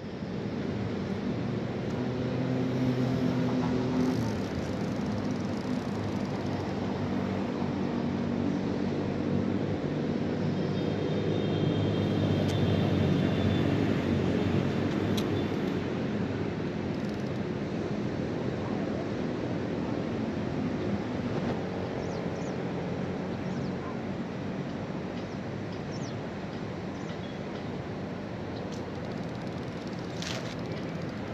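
Low engine drone from a passing motor, swelling to its loudest around the middle and slowly fading, over a steady outdoor background hiss.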